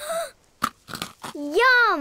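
A few short, crunchy clicks, then a cartoon character's drawn-out vocal exclamation that rises and falls in pitch.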